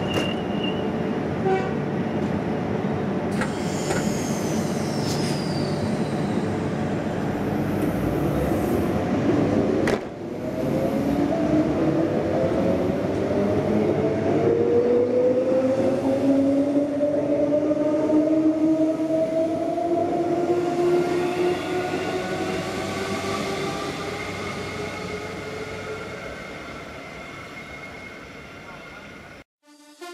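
Queensland Rail electric multiple unit first sitting at the platform with a steady running noise, then pulling away. Its traction motors whine in several tones that climb steadily in pitch as it accelerates, and the sound fades over the last few seconds as it leaves.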